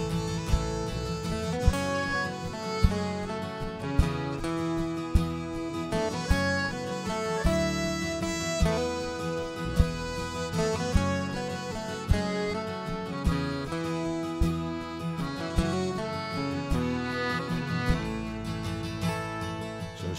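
Live country band playing an instrumental break: a lead acoustic guitar picks out a melody over strummed acoustic guitar, bass and drums keeping a steady beat.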